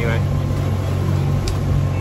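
Sailing boat's engine running steadily under way as a low, even drone, with a steady hiss of wind and water over it and a brief click about one and a half seconds in.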